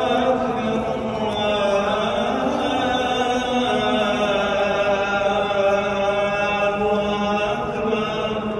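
A single male voice chanting in long, drawn-out notes that glide slowly up and down in pitch, with a faint crowd murmur underneath.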